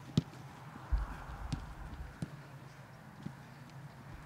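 A football being kicked during play on a grass pitch: a handful of sharp, irregular thuds about half a second to a second apart, the loudest near the start.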